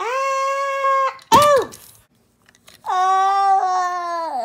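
A person's voice giving long, high-pitched held cries while playing out the toy characters' jump and flight: a sustained cry of about a second, a short rising-and-falling one right after, then another long cry that starts near the three-second mark.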